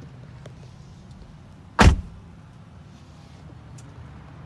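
A car door shutting: one heavy, short thump a little under two seconds in, over a steady low hum.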